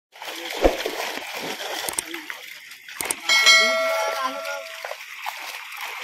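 Fish splashing and thrashing at the water's surface against a net, with two sharp slaps on the water, one near the start and one about three seconds in. A bell-like chime rings for about a second and a half just after the second slap.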